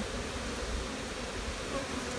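Honey bees buzzing steadily in a mass around an open hive and a frame lifted from it.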